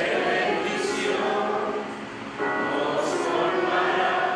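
Group of voices singing a hymn together in long held phrases, with a short break about two seconds in before the next phrase.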